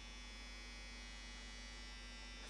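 Faint steady electrical hum with a light hiss: room tone.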